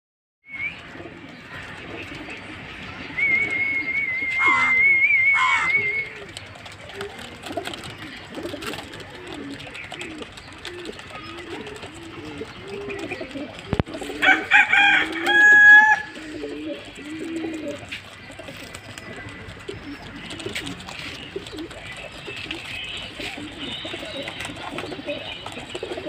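Domestic pigeons cooing, a long run of low rolling coos one after another. A few seconds in, a high wavering whistle-like tone lasts about three seconds. A little past the middle, a brief loud high-pitched call rises above the cooing.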